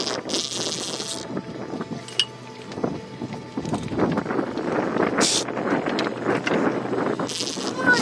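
Spinning fishing reel buzzing in short bursts, the longest in the first second, with shorter ones about five seconds in and near the end, as a strong hooked fish pulls against the bent rod.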